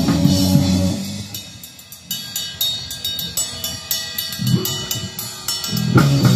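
Hardcore punk band playing live on drum kit, electric guitar and bass. About a second in the guitars and bass drop out and the drums carry on alone with steady cymbal hits, until the full band comes back in at the end.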